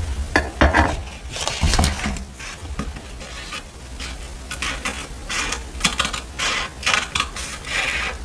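Paper rustling and crinkling as a printed sheet is picked up and handled. Then small metal scissors cut into it in short, irregular snips, with thin textured paper crackling against it.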